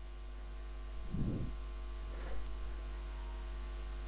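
Steady low electrical hum in the recording, with a faint soft sound about a second in.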